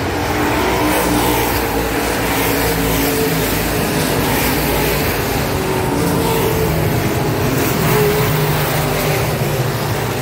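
Several dirt-track modified race car engines running together as a pack circles the oval, a steady mix of engine tones at different pitches.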